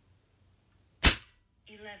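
A single shot from an EdGun Leshiy 2 PCP air rifle, regulated and fitted with changed power jets, fired through a chronograph at about 11.5 ft-lb: one sharp crack about a second in, with a short ring-off.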